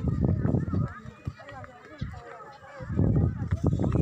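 People talking in the background, with loud low rumbling bursts near the start and again in the last second.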